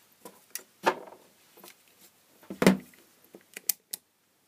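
Handling knocks as a handheld multimeter is picked up and set down on a work surface, the loudest a thump just under three seconds in, followed near the end by a quick run of sharp clicks from its rotary range dial being turned.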